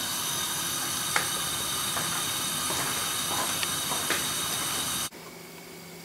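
Gas hob burner hissing steadily under a saucepan of cream, with a few faint ticks; the hiss cuts off suddenly about five seconds in.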